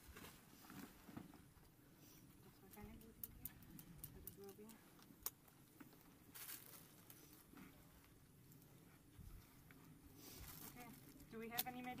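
Quiet handling noise while a gauze bandage is wrapped around a casualty's hand: faint rustles and a few small clicks, with a faint voice in the middle and speech starting near the end.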